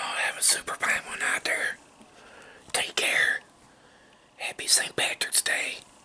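A man whispering close to the microphone in three short runs of words with pauses between.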